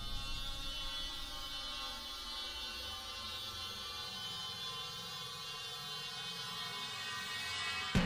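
Opening of an experimental electronic track: a steady, sustained drone of many held tones, with no beat.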